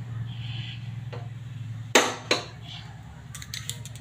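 Whole eggplant being turned on the metal pan support of a gas burner while it roasts: two sharp knocks about two seconds in and a quick run of light clicks near the end, over a steady low hum.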